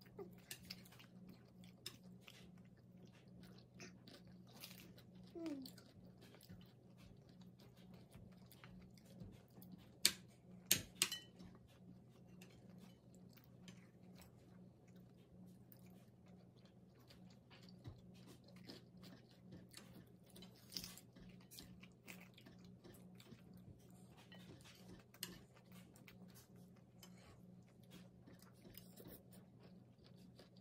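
Faint chewing and biting of crisp Belgian endive leaves, with many small mouth clicks and a few sharper clicks about ten seconds in.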